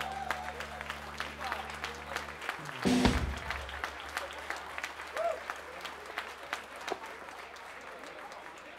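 A live rock band's last sustained chord on bass and electric guitar rings on and cuts off about two and a half seconds in. A loud hit follows a moment later, then thin, scattered clapping from a small audience.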